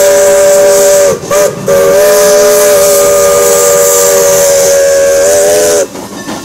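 Steam locomotive's chime whistle sounding a chord of several notes, with steam hiss. It blows the end of a long blast, a brief toot about a second in, then a long blast that cuts off just before the end, each sagging slightly in pitch as it closes. This is the tail of a grade-crossing signal.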